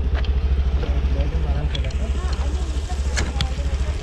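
Honda Activa scooter's single-cylinder four-stroke engine idling steadily, a low, evenly pulsing rumble.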